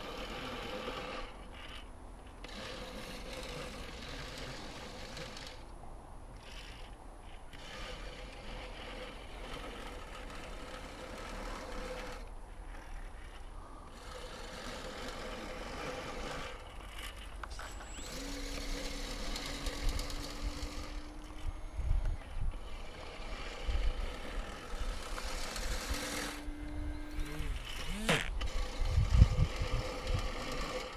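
Small electric motor of a powered RC model glider running in short bursts in the second half, with a steady whine that rises slightly in pitch; the last burst climbs steeply in pitch before it cuts off. Wind rumbles on the microphone throughout.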